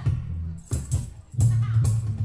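Live acoustic band music: a hand-held tambourine jingling in a few sharp strokes over acoustic guitar, with the low end filling in steadily about one and a half seconds in.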